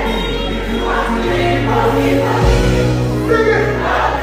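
Live afrobeat band music at a concert, with a steady bass line under many voices singing.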